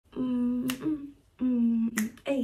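A woman humming a tune in two long held notes, with two sharp clicks, one between the notes and one at the end.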